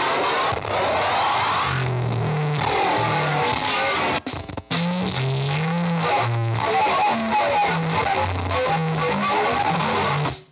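Harsh distorted noise music from a table of effects pedals and electronics: a dense wash of noise with a line of low buzzing notes stepping up and down from about two seconds in. The sound cuts out for an instant twice a little after four seconds.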